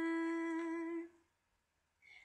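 Unaccompanied woman's singing voice holding one steady note, the end of a sung line, which stops a little over a second in.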